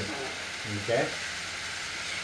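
Steady hissing rattle of several battery-powered Trackmaster toy trains running on plastic track.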